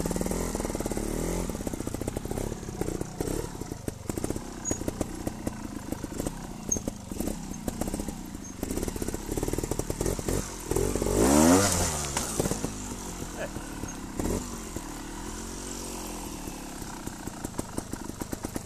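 Trials motorcycle engine ticking over with an uneven popping beat and blipped several times, with one long, loud rev that rises and falls about eleven seconds in as the bike is ridden up the slope, then a softer rev shortly after.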